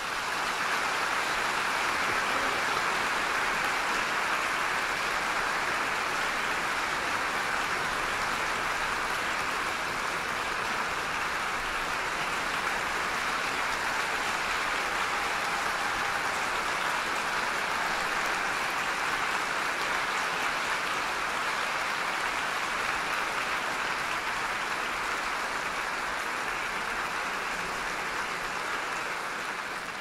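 Large audience applauding: steady, dense clapping that thins out near the end.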